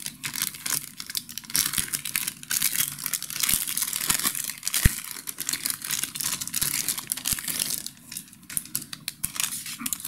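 Thin plastic kit bag crinkling and rustling as hands work a smaller bag of clear parts out of the main bag, with one sharper tap about five seconds in.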